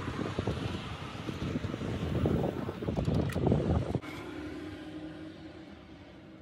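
Wind buffeting the microphone, an uneven rumbling noise that stops abruptly about four seconds in, leaving a quieter, steady background.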